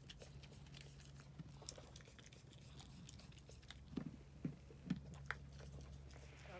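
Ewe licking and nuzzling her newborn lamb: faint mouth and crunching sounds with small clicks, and a few short, soft low sounds in the last two seconds.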